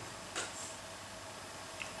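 Quiet room tone with faint hiss, broken by a soft short click about half a second in and a fainter one near the end.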